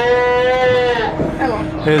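Sheep bleating: one long, steady bleat that ends about a second in.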